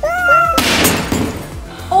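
A smartphone in a Casetify impact case drops from a stepladder and hits the hard floor about half a second in, a short, loud clatter that fades quickly. A high squealing laugh comes just before it.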